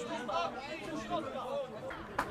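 Several people's voices talking and calling out over each other, the words not clear.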